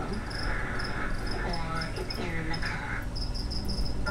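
Crickets chirping in short, evenly repeated pulses, fading in the middle and strong again near the end, with a television programme's voices faintly underneath.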